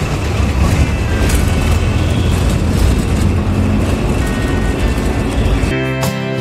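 Steady rumble of a city bus's engine and road noise heard from inside the cabin. Just before the end it cuts suddenly to guitar music.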